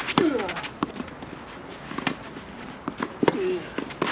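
Tennis balls being struck by rackets and bouncing on a hard court during a doubles rally: a series of sharp pops at irregular intervals, the loudest shortly after the start and about two seconds in.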